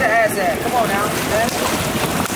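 A voice with short, sweeping rises and falls in pitch, over a steady rushing noise like wind.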